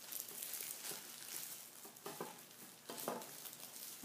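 Thin disposable plastic gloves crinkling and rustling as the gloved hands handle and pick at a small fish: a continuous fine crackle.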